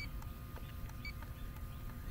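Inficon D-TEK Stratus refrigerant leak detector ticking faintly at a slow, even rate of about one tick a second, its baseline rate with no leak being registered, over a low rumble.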